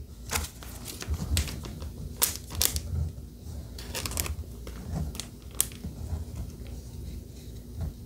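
A football trading card being handled and slid into a plastic sleeve on a tabletop: scattered small crinkles, rustles and clicks, with a few soft knocks.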